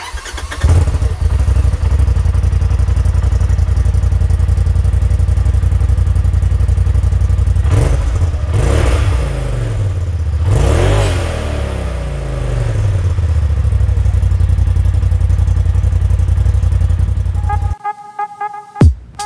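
A 2020 Polaris RZR XP4 Turbo's turbocharged parallel-twin engine, on its stock exhaust, is cold-started. It catches within the first second and idles, is revved up and let fall back twice, about eight and eleven seconds in, then is shut off suddenly just before the end.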